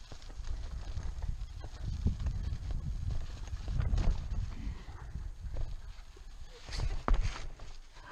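Road bike rattling and jolting over a rough, rutted dirt trail: tyres rumbling on the dirt with irregular knocks and clatters from the bike, the loudest knocks coming near the end.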